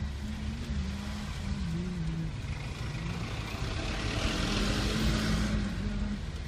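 Traffic and engine noise heard from inside a moving car: a steady low rumble, with the hiss of a passing vehicle swelling from about four seconds in and fading near the end.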